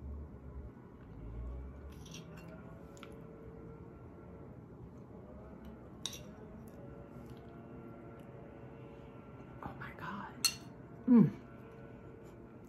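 Quiet eating: a few small clicks of a spoon and mouth sounds while cake is chewed. Near the end comes a short, loud vocal sound that falls steeply in pitch.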